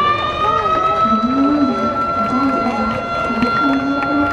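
Stadium motor siren that has just wound up in pitch and holds one long steady high tone: the siren that marks the end of a Japanese high school baseball game as the teams line up and bow. Voices shout and call underneath it.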